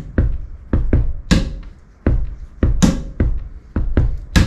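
Body drumming on a chair: a foot stomping the floor and a hand striking the armrest of a metal-framed chair, playing a slow hip-hop style groove. Low foot thumps fall between two sharper hand hits on the backbeat, about a second and a half apart.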